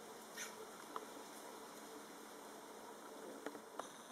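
Male Grand Cayman blue-throated anole (Anolis conspersus) giving a brief, faint, high-pitched vocalisation about half a second in during an aggressive face-off. A few faint ticks follow later.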